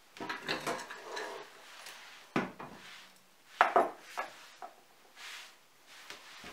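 Kitchenware being handled: dishes and utensils clattering and knocking. There is a sharp knock about two and a half seconds in and two louder clacks near four seconds.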